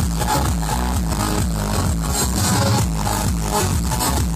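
Loud electronic dance music from a live DJ set played over a stadium sound system, with a steady beat and a stepping bass line.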